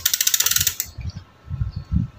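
Bicycle rear freehub ratcheting as the cranks are turned backwards: a fast, even run of sharp clicks that stops just under a second in. A few dull low knocks from handling the drivetrain follow.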